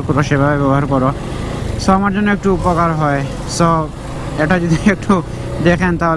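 A voice talking in short phrases over the low, steady rumble of a motorcycle being ridden through traffic.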